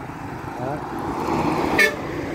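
Heavy truck and motorbike passing close on a highway, the tyre and engine noise swelling as they come by. A single short horn beep sounds near the end.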